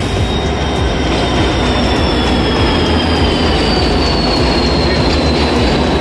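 Indian Railways passenger train running into the station platform: a loud, dense rumble of wheels on rail with a high squeal that slowly falls in pitch as the train slows to stop.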